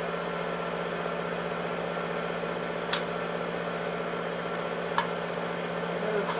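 Film projector running with a steady mechanical hum. Two short sharp clicks come about three and five seconds in.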